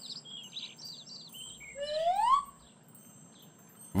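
Cartoon sound effects: a string of short, high bird chirps, then about two seconds in a louder rising whistle-like glide lasting under a second.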